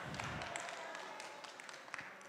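Faint congregation sounds in a large hall: scattered claps and murmur that fade slightly toward the end.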